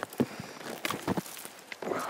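A folding pruning saw cutting through thin, dry brush branches: a few short, irregular rasping strokes.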